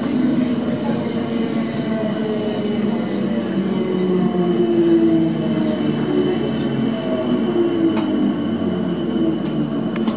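Class 455 electric multiple unit with a new AC traction pack, heard from inside the carriage as it slows into a station. The motor whine falls steadily in pitch over several seconds above the rumble of wheels on rail. There is a single sharp click about eight seconds in.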